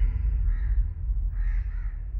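Crows cawing twice, about a second apart, over a steady low outdoor rumble, as the last of a ringing music tone fades out.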